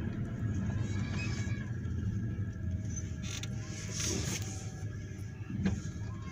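Steady low rumble of a car driving, heard from inside the cabin, with a couple of faint ticks and faint creaking tones about midway.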